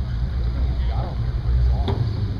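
Two drag cars idling at the starting line, a steady low engine rumble, with a sharp click near the end.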